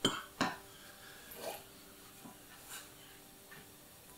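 A knife scraping diced cucumber off a wooden cutting board into a glass salad bowl. Two sharp knocks come right at the start, followed by a few softer scrapes and clatters.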